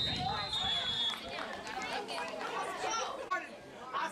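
Nearby spectators chattering over one another, with a short, steady referee's whistle blast right at the start that stops after about a second.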